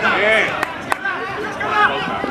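Several people's voices calling and shouting over one another on a football pitch during play, with two short sharp knocks about halfway through.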